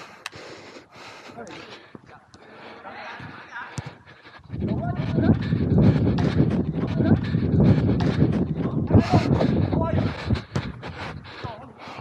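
Heavy wind buffeting and rumbling on a body-worn camera's microphone while the wearer runs, with hard breathing, starting about four seconds in and easing near the end; players' shouts are heard faintly around it.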